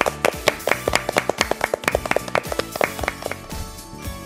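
A few people clapping by hand over steady background music; the claps die away shortly before the end.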